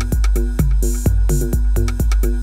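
Live techno played on hardware synthesizers and drum machines: a steady four-on-the-floor kick about twice a second, with short pitched synth stabs and ticking hi-hats between the kicks.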